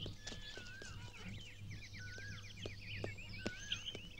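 Faint birdsong: several birds chirping and warbling, with a quick trill about two seconds in, over a low steady hum and scattered faint clicks.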